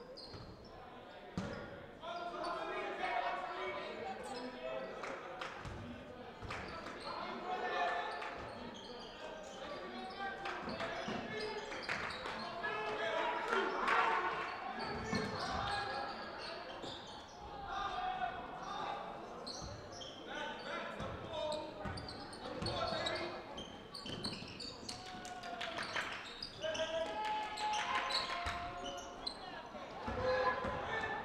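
Basketball game sound in a gym: a ball bouncing on the hardwood floor, with players and spectators calling out indistinctly throughout. The sound echoes around the hall.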